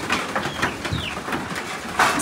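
A bird calling, with a short falling note about a second in.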